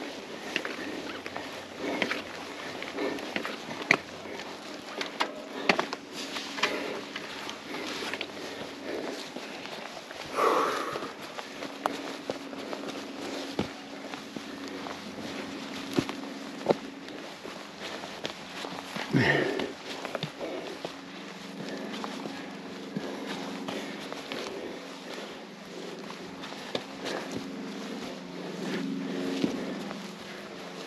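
Footsteps on a dirt trail with the clicks and knocks of a mountain bike being pushed uphill on foot, with two louder breaths or grunts from the rider about ten and nineteen seconds in. A low steady hum sets in about a third of the way through.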